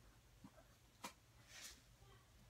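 Near silence: room tone with a few faint soft clicks and a brief faint rustle.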